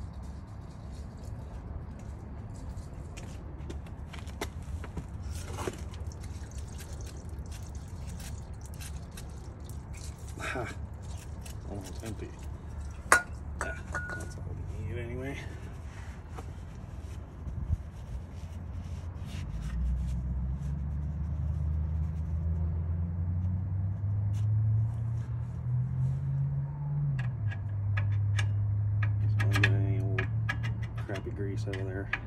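A rag rubbing and wiping over a greasy steel wheel spindle, in short scratchy strokes, with a sharp click about thirteen seconds in. From about two-thirds of the way through, a low engine hum comes in and shifts in pitch.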